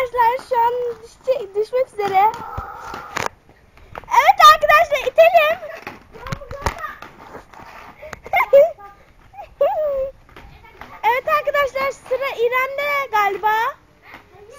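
Children's high-pitched voices calling and chattering in short bursts, not caught as words.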